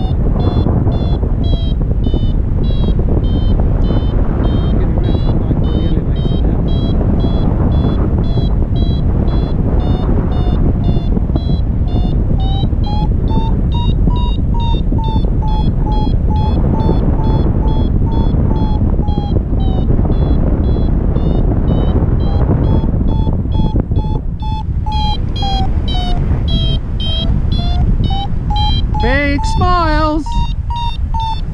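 Paragliding variometer beeping in a fast regular train, its tone slowly rising and falling in pitch, the climb signal of a wing gaining height in lift. Strong wind rushes on the microphone underneath.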